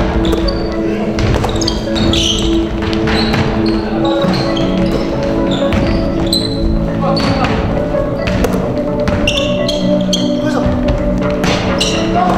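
Music playing throughout, with a basketball being dribbled and sneakers squeaking briefly on a hardwood court, along with voices.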